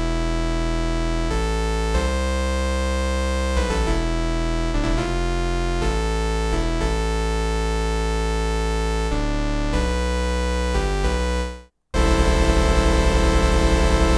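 Synthesizer waveform built from sawtooth-like cycles, looped as a sample in a Kontakt instrument and played from a keyboard: held single notes and chords change every second or two and sustain without fading, and the loop runs through with no click. The sound cuts off briefly just before twelve seconds in, then a new chord is held.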